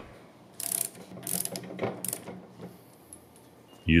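Hand ratchet wrench with a 30 mm socket clicking in several short runs as it tightens a brass valve cap on a plunger pump.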